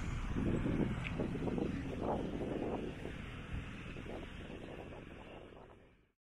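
Outdoor ambience with wind on the microphone and faint crowd noise, fading out steadily to silence.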